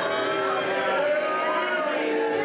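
Crowd of spectators booing: a long, drawn-out chorus of many voices at once.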